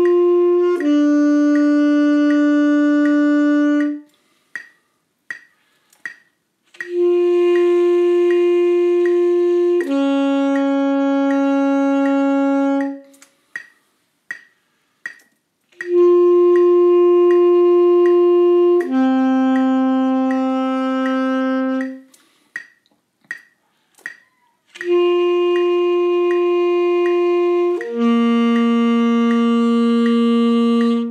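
Bassoon playing long tones: four pairs of held notes, each pair a concert F followed by a lower note that drops a little further each time, with short rests between pairs. A metronome clicks about twice a second throughout.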